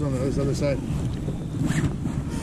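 Wind rumbling on the microphone, a steady low buffeting, on an open boat in strong wind.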